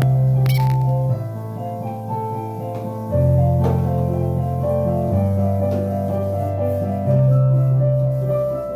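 Piano played by two people at one keyboard: held bass notes changing about every two seconds under a melody of shorter notes higher up.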